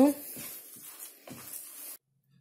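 Hands kneading squeezed-out grated raw potato in a plastic bowl: faint, irregular handling sounds.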